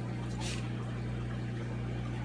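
Steady low hum of a reef aquarium's pumps and equipment, with a short hiss about half a second in.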